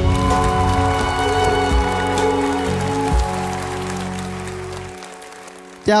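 Closing chord of a bolero band accompaniment, held and dying away over about five seconds, with audience applause underneath.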